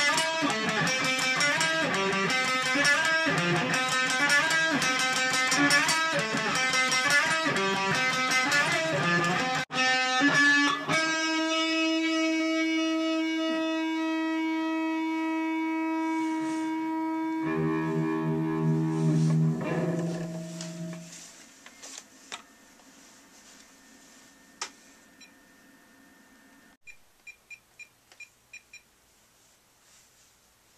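Electric guitar played through an amplifier: about ten seconds of quick picked notes, then a long held note and a chord that ring out and die away about twenty seconds in. A string of short faint clicks follows near the end.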